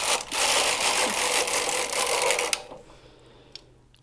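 Carriage of a Singer domestic knitting machine pushed along the needle bed, knitting a row of two-colour Fair Isle with a continuous mechanical rattle that stops about two and a half seconds in. A single faint click follows near the end.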